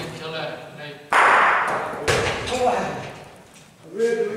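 Bocce balls knocking on the court: a sudden loud impact about a second in that rings on in the hall, then a second knock a second later, with men's voices around them.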